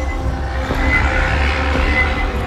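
Background music with a steady low bass.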